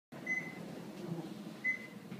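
Elevator car's electronic beep, sounding twice about a second and a half apart, over the car's low steady rumble.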